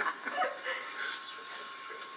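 A brief chuckle right at the start, then quiet room sound with faint murmuring and a thin steady hum.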